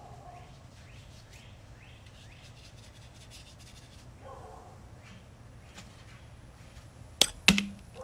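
Quiet room tone, then two sharp knocks close to the microphone, about a third of a second apart, near the end.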